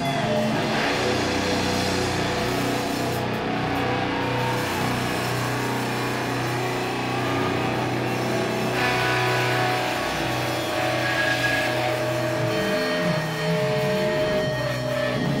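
Live instrumental stoner doom metal band playing: heavily distorted electric guitars and bass hold slow, sustained low notes over drums, at a steady loud level.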